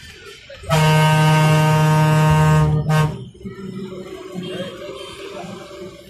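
Loud bus horn: one long blast of about two seconds, then a short second toot, over the rumble of the moving bus.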